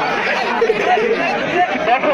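Large outdoor crowd of spectators talking and calling out at once, many overlapping voices in a steady babble.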